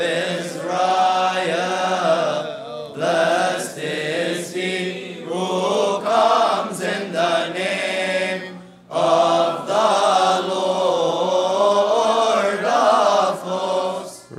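Men's voices chanting a Coptic Orthodox liturgical hymn response together in sustained, melismatic lines, with a short break about nine seconds in.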